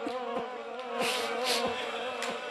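Soft, evenly spaced thumps, about three in two seconds, of mourners beginning matam by striking their chests with their hands, over a steady low buzzing hum.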